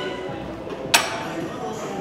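A single sharp metal clank of gym weights about halfway through, ringing briefly, over a steady bed of gym music and voices.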